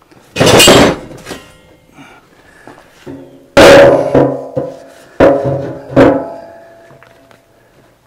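Heavy steel concrete-mixer drum being rolled over, banging several times. The loudest bang comes about three and a half seconds in, and the metal rings on for a few seconds after each hit.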